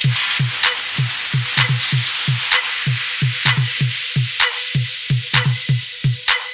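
House music from a DJ mix: a steady four-on-the-floor kick drum with a bright, hissing noise wash laid over the beat.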